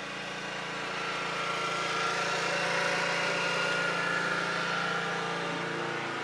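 A motor vehicle's engine passing by, its sound growing louder to a peak around the middle and easing off near the end.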